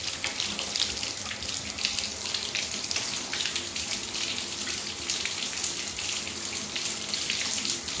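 Bathtub faucet running in a steady stream while a Gordon Setter laps from it, its tongue breaking the flow in irregular splashes.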